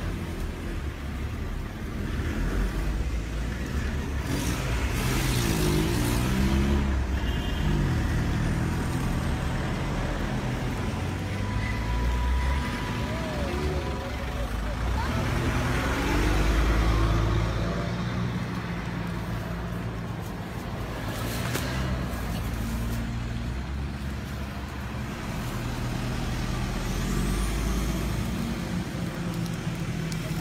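Road traffic: motor vehicle engines running with a steady low rumble, growing louder as vehicles pass a few times, and indistinct voices in the background.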